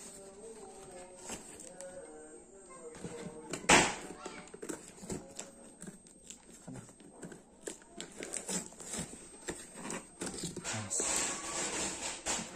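Corrugated cardboard being torn and cut open with scissors: irregular crackling and ripping, with one loud sharp rip about four seconds in.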